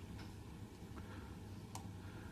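Quiet room tone with a steady low hum and a couple of faint clicks, the clearer one near the end.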